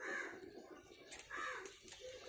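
Two faint cawing bird calls, about a second apart.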